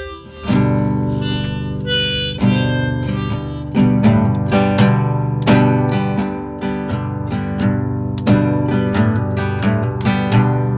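Acoustic guitar strummed in a steady rhythm, starting about half a second in, with a harmonica in a neck rack playing over it. This is the instrumental intro of a folk song, before the vocal comes in.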